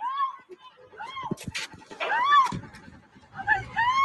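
A person crying out in distress, high rising-and-falling shrieks about once a second, recorded on a bystander's phone. A few sharp clicks sound about a second and a half in.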